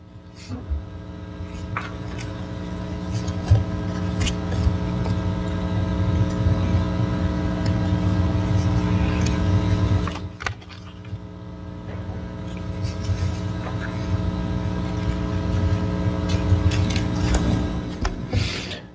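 A steady hum of several tones over a low rumble, with scattered knocks and clicks. It swells gradually, drops off suddenly about halfway through, then builds again.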